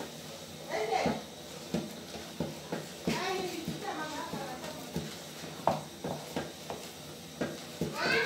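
A wooden cooking stick knocking and scraping against the side of an aluminium pot while stirring a thick white mash, with a knock roughly every half second to second. Voices are heard in the background.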